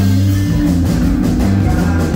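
A live band playing rock music with electric guitars and drums, loud and steady, with a strong low end.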